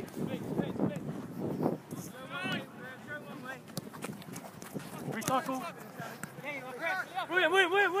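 Distant shouts and calls of youth footballers playing a training game on the pitch, with faint knocks and thuds scattered through. A closer man's shout comes right at the end.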